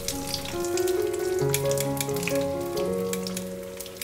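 Breaded nuggets frying in shallow oil in a wok, a steady sizzle with many small crackles and pops, over background music of held notes.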